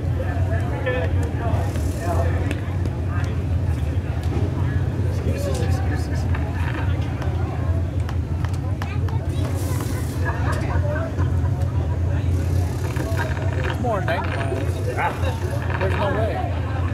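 Indistinct chatter of nearby spectators over a steady low rumble.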